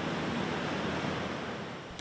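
Steady rushing noise of city traffic, dipping a little near the end.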